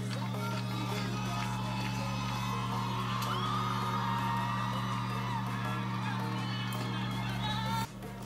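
Music and a crowd cheering and whooping, played back through a television's speaker, over a steady low hum.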